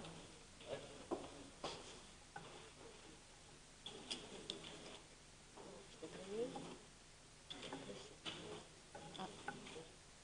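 Quiet meeting-room ambience: faint, distant voices with scattered small clicks and taps.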